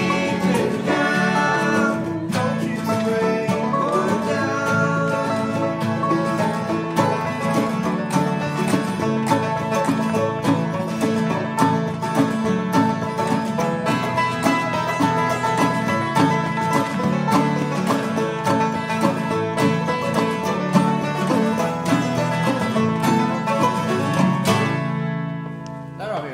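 Acoustic bluegrass band, with banjo, mandolin and acoustic guitars, playing a brisk instrumental passage with rapid picked notes over a steady strummed rhythm. Near the end the band stops together on a final chord that rings and fades out.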